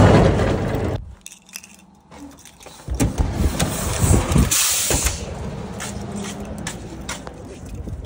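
Metal roll-up storage-unit door rattling as it is pulled down, stopping about a second in. A few seconds later comes a second spell of clattering with sharp clicks.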